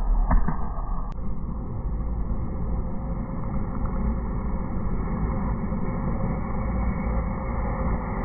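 Open-wheel racing car engines on the circuit heard from the fence as a steady, muffled drone with no single close pass-by, and one short knock about a third of a second in.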